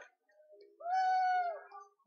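A single long call from a person's voice, held at a steady pitch for about a second and dropping away at the end.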